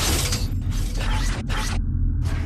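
Mechanical sound effects: a steady low rumble under whirring, ratcheting machine noise that breaks off briefly a few times.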